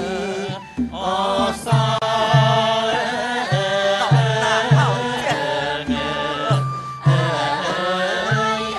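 A voice chanting a wavering, melodic line over accompanying music, with a low drum struck repeatedly, roughly once or twice a second.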